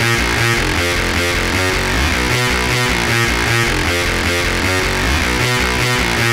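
Schranz hard techno track: a steady kick drum beat under a repeating riff, loud and unbroken.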